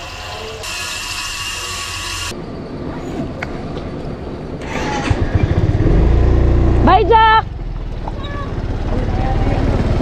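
Hot dogs sizzling in oil in a frying pan for about two seconds, cut off abruptly. About six seconds in, a scooter engine starts and idles with a low rumble, and a voice speaks briefly over it.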